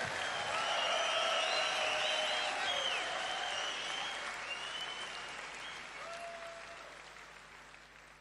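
Concert audience applauding, the sound fading out gradually toward the end.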